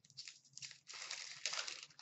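Foil wrapper of a 2016-17 Upper Deck SP Authentic hockey card pack being torn open and crinkled by hand, a crackling rustle that grows loudest in the second half.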